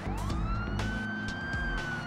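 Police car siren wailing: the pitch sweeps up quickly, holds, then slowly falls. It plays over background music with a beat.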